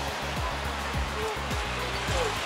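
Background music with a steady beat of about three beats a second and sustained bass notes, over an even hiss of noise.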